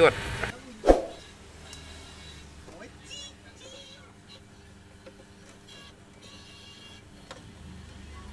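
A voice trails off, then a single sharp click with a short ring about a second in, followed by faint low-level handling sounds and faint tones.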